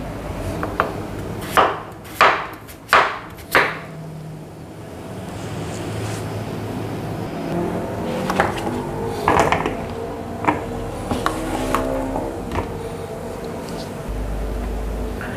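Knife cutting peeled raw potatoes on a wooden cutting board: five sharp knocks of the blade against the board in the first four seconds, then a few lighter, scattered knocks later on.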